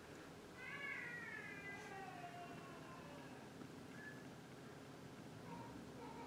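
A cat's faint, long meow, falling slowly in pitch, followed later by a couple of brief, fainter calls.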